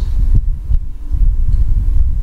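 Loud, uneven low rumbling throb on a handheld microphone, with no words over it.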